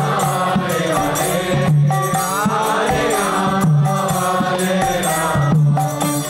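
Devotional kirtan: a voice singing a mantra-style chant with long held notes, over a regular drum beat and jingling hand percussion.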